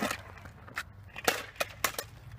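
Metal kick scooter being kicked and knocked about on asphalt: a handful of sharp knocks and clacks, the loudest about halfway through.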